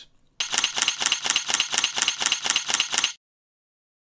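Camera shutter sound effect firing in a rapid burst, a quick even run of sharp mechanical clicks, several a second. It cuts off suddenly about three seconds in.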